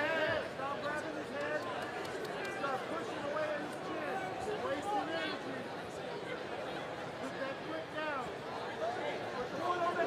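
Crowd of ringside spectators shouting and calling out, several voices overlapping at once, at a steady level.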